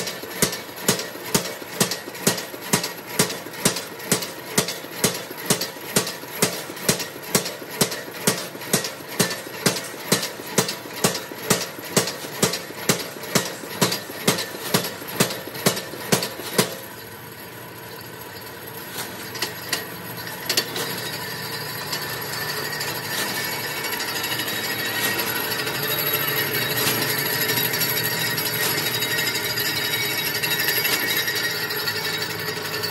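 Flywheel-driven mechanical punch press perforating a steel sheet with round holes, striking in an even rhythm of about two and a half strokes a second. The strokes stop suddenly about 17 seconds in, leaving a steady machine noise that slowly grows louder, with a few knocks.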